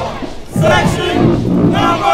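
Marching band members shouting a chant as they walk, in two short calls about a second apart.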